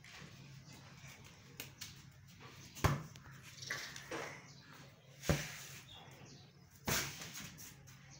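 Three sharp, dull thumps: a rubber party balloon being batted by hand, about three, five and seven seconds in, over a faint low hum.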